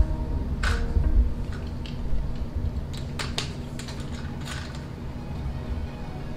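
TenPoint Vapor RS470 crossbow being cocked with its ACUslide crank, which runs almost silently: only handling rumble and a few faint, scattered light ticks are heard over a steady low background tone.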